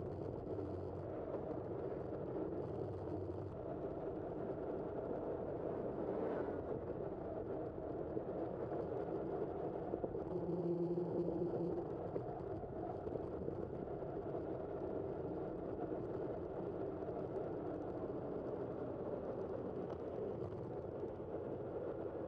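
Steady rolling noise of a bicycle ride through city streets, heard through a bike-mounted camera. A brief low hum comes in about ten seconds in and lasts a couple of seconds.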